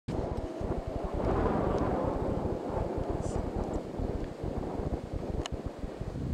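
Wind buffeting the camcorder microphone in a steady rough rumble, with faint voices behind it.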